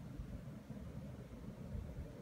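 Faint low rumble and hiss with no distinct events: room tone.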